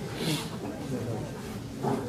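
Indistinct murmured speech in a large hall, with no clear words.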